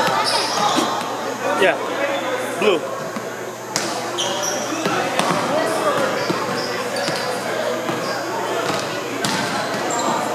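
Volleyballs being hit and bouncing on a hardwood gym floor, several sharp smacks, with short high squeaks of sneakers on the wood over a constant background of many overlapping voices.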